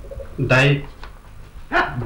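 Speech only: a man's voice calling out a short word, then a second short utterance near the end.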